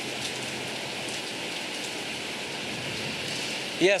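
Heavy rain from approaching Hurricane Francine pouring down onto the street and pavement, a steady, even hiss.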